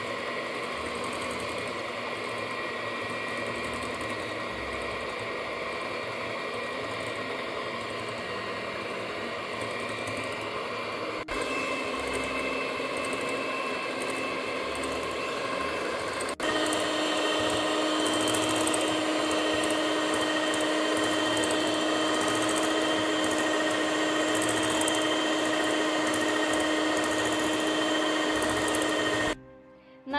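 Moulinex electric hand mixer running steadily, its beaters whipping a cooled chocolate-and-cream mixture in a glass bowl until it thickens. The motor hum grows louder and higher in two sudden steps, about a third and just past halfway in.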